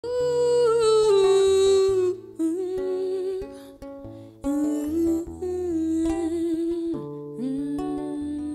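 A woman's voice singing a wordless melody into a microphone, with long held notes that slide and waver in ornaments, over a plucked acoustic guitar.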